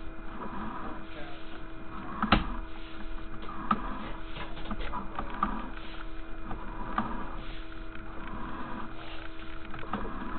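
Sewer inspection camera's push cable being pulled back through the pipe: irregular scraping and rattling with a sharp click about two seconds in, over a steady hum.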